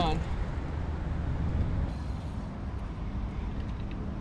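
Steady low rumble of outdoor background noise with a faint hiss, and no distinct event in it.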